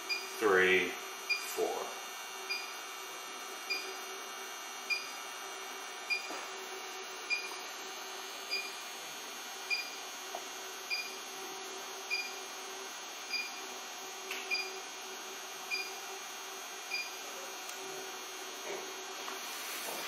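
ALL-TEST Pro 7 motor circuit analyser giving short electronic beeps, evenly spaced about every 1.2 s, while the motor shaft is turned slowly by hand. Each beep marks a step of the shaft's rotation, four to a revolution, during the analyser's dynamic rotor test. A faint steady hum runs underneath.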